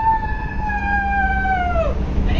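A person's long, high-pitched drawn-out yell, held on one note for nearly two seconds, sinking slightly and then dropping off at the end, over a low steady rumble of wind on the microphone.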